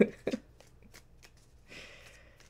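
A deck of tarot cards being shuffled by hand, with soft, scattered clicks of cards slipping and tapping together.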